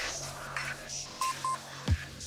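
Electronic bass music playing from a DJ mix: a steady bass line and hi-hats, with two short beeps a little over a second in and a deep kick drum just before the end, the loudest hit.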